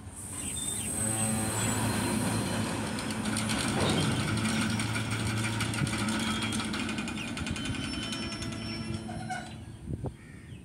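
Open freight wagons rolling past at close range, wheels clattering over the rail joints in a steady run of clicks over a low rumbling drone. The sound swells in the first second and drops near the end.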